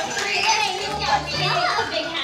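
Children's voices and excited chatter over background music with a repeating bass line.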